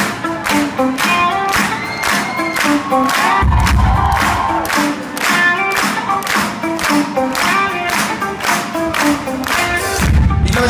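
Live rock band playing loudly through a venue PA, heard from within the crowd: a steady beat with pitched instrument notes, and a deep bass swell about three and a half seconds in.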